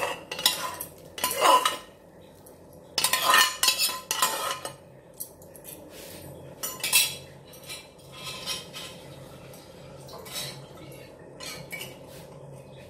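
A metal spoon scraping and knocking against a steel bowl and the frying pan as mashed potato is emptied into the pan, in irregular clinks and scrapes, the loudest in the first few seconds.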